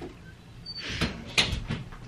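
Handling noise: a brief rustle followed by a few sharp light clicks and knocks.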